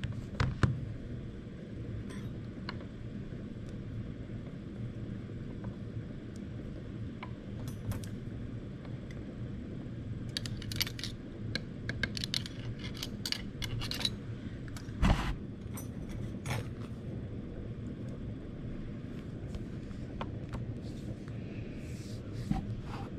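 Light clicks and clinks of glass test tubes being handled in a wooden rack as potato pieces are dropped into hydrogen peroxide. The clicks are thickest about halfway through, with one sharper knock just after, over a steady low room hum.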